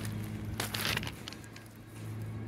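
A brief rustling crunch a little over half a second in, over a steady low hum.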